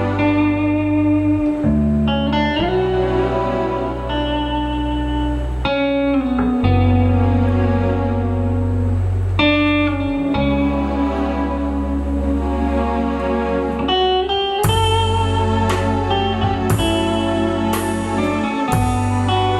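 Rock band playing live without vocals: an electric guitar plays a slow, sustained melody over held bass notes and keyboards. Drums with cymbal crashes come in about three-quarters of the way through.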